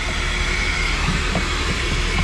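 Coin-operated car-wash vacuum running, its hose nozzle sucking along the side of a car seat: a steady rushing drone with a steady high whine over it.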